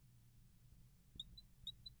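Near silence, broken in the second half by about four faint, short squeaks of a marker writing on a glass lightboard.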